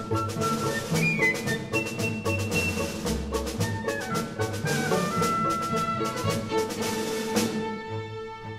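Live orchestra playing a film score: strings hold pitched notes under a quick run of sharp percussive hits. The hits stop about seven seconds in, leaving the held notes.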